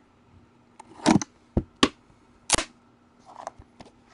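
Sharp knocks and snaps of a trading-card hobby box being handled and opened, four quick hits in the second and third seconds, the first the loudest.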